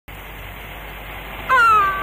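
Steady hiss of an old film soundtrack, then about a second and a half in a woman's loud, high wail that falls slightly in pitch.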